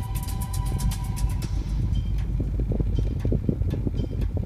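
Music stops about a second and a half in, leaving the steady low rumble of a car driving, heard from inside the cabin, with irregular low thumps.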